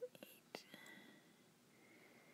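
Near silence: faint room tone with a few soft clicks in the first second.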